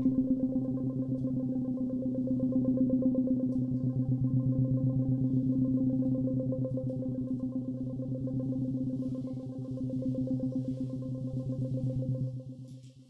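A sustained low drone held on one pitch with a stack of overtones, pulsing in a fast even tremolo, from electronics and modified clarinets.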